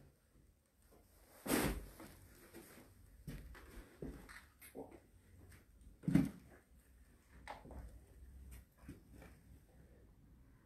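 Faint, scattered knocks, clicks and rustles of movement in a quiet, empty room, with two louder thumps about one and a half and six seconds in.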